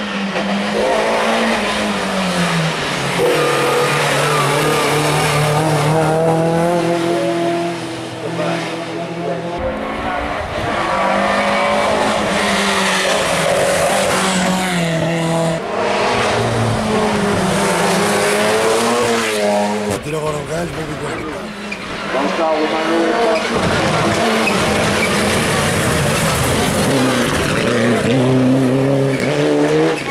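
Hillclimb race cars climbing a twisting mountain road at full throttle. The engines rev hard and keep rising in pitch, then drop sharply at each gear change or lift for a corner.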